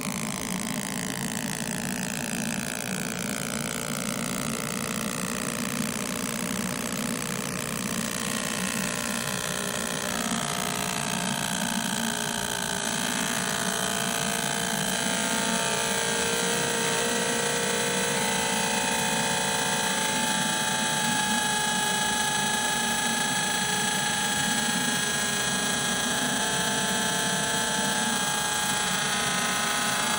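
60 W MOPA fibre laser engraving a logo into a black card: a steady machine hum with a whine of several steady tones over it that jump to new pitches every few seconds as the laser works through the fill, with a falling tone in the first few seconds.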